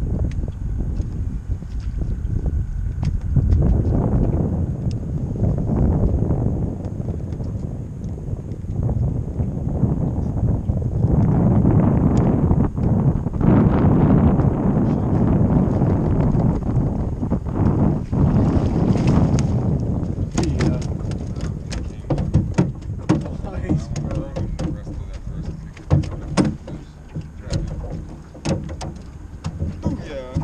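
Gusty wind rumbling on the microphone, strongest in the middle. From about two-thirds of the way through, scattered light clicks and knocks.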